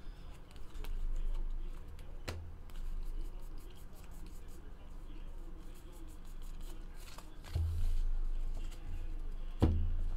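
Trading cards being handled by hand: soft rustles and taps as a stack is flipped through, with a few low thumps as cards and stacks are set down on the table mat, over a steady low hum.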